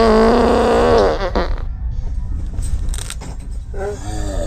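A drawn-out, groaning voice for about the first second and a half, over the steady low rumble of road noise inside a moving car.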